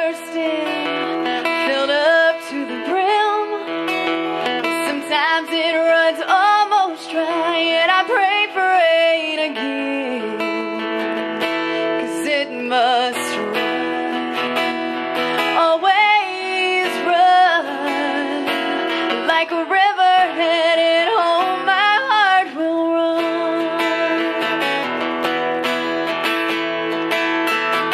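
A woman singing a song to her own acoustic guitar, which is tuned down. Her voice drops out near the end, leaving the guitar playing alone.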